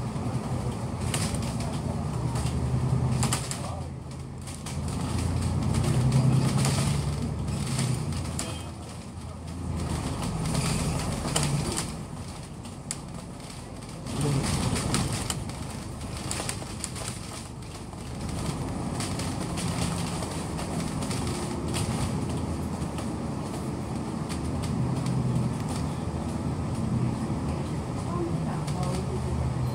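Cabin noise inside a moving bus: engine and road rumble that swells and fades as the bus speeds up and slows, with rattles and clicks from the body and faint voices in the background.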